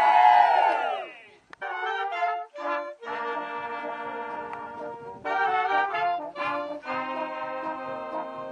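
A group of voices cheering and whooping together, then, about a second and a half in, a village wind band of clarinets, trumpets and French horns starts playing, sounding held chords with short breaks between phrases.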